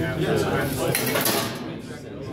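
Sheet-metal clattering and clinking from a bottle-sorting machine as its stainless-steel chute and diverter flap move, with voices in the background.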